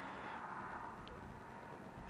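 Faint, steady background noise with no distinct source in a pause between speech, with one tiny click about a second in.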